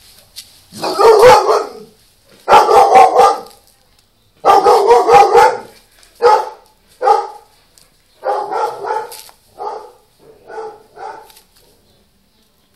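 A dog vocalizing close to the microphone: three loud calls of about a second each, then about six shorter, quieter ones that fade toward the end.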